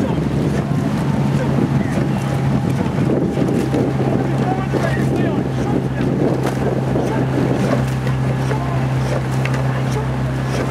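Motor launch running steadily alongside a rowing eight, with a constant engine hum under rushing water and wind on the microphone; the crew's oar blades splash into the water stroke after stroke.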